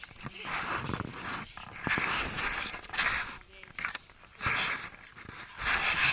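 Dog panting and snuffling hard with its head down a rabbit burrow, the breaths coming in irregular noisy bursts about once a second.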